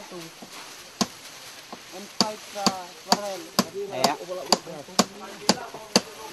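Repeated sharp impact strikes: a single one about a second in, then a steady run of about two a second.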